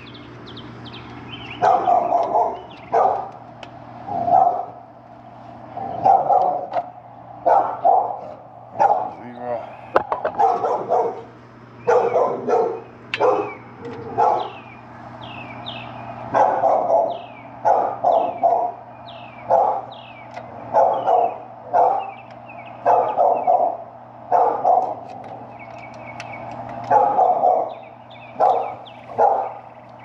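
A dog barking over and over, roughly one bark a second throughout, with a steady low hum underneath.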